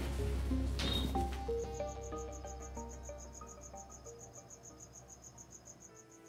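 Crickets chirping in a steady, even pulse, about five chirps a second, over soft background music of held notes, the whole slowly fading.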